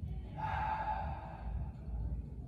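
A single deep breath through a cloth face mask, starting about half a second in and lasting about a second, one of a set of slow breaths held in a shoulder-blade reaching stretch.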